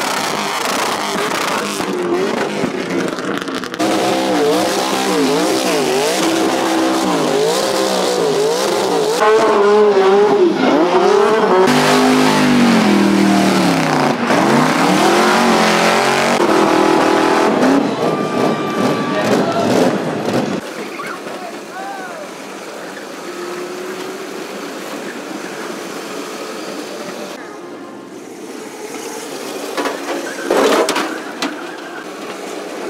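Drift car engines revving hard up and down through burnouts and slides, with tyre squeal. About two-thirds of the way through, it cuts to a quieter, steadier engine.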